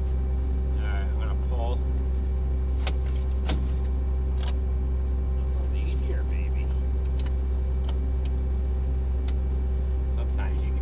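An engine running steadily with a low drone, and a few sharp metal clinks from hands and tools on the corn head's row-unit gathering chains.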